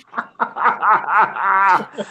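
A man laughing, a quick run of short chuckles.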